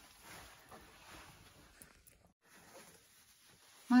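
Faint rustling of a quilted gilet's fabric as its hood is pulled up over the head. About two seconds in the sound breaks off in a brief silence, followed by soft room noise. A woman starts to speak right at the end.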